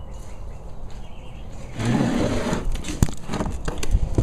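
Handling noise: a burst of rustling about two seconds in, then a few sharp knocks near the end as the camera is moved.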